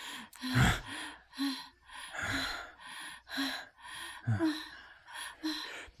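A woman's quick, breathy gasps in close succession, about two a second, some with a little voice in them.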